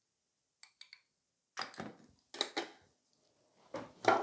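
A few light clicks, then several louder knocks and taps of a metal nail spatula and other small hard items being handled and put down on a tabletop.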